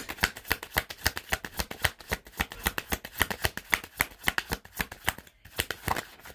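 Tarot deck being shuffled by hand: a quick, even run of card snaps, several a second, that stops about five seconds in.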